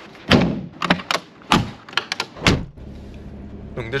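A series of thumps and clunks like car doors and latches shutting, then, about three seconds in, the Mercedes-Benz G-Class running steadily, heard from inside the cabin.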